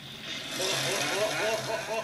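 Dry rice sticks (rice vermicelli) sizzling loudly as they hit hot oil in a wok and puff up. The hiss swells about half a second in, with people's excited voices over it.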